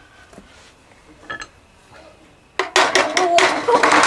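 Metal clattering and clinking: a hammer knocking against a sheet-steel appliance base plate and the motor mounted on it. The clatter starts suddenly about two and a half seconds in and carries on as a loud, rapid run of strikes.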